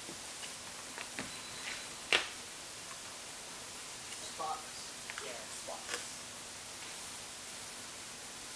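Low steady hiss of room tone with one sharp click about two seconds in and a few fainter clicks, plus brief faint murmured speech near the middle.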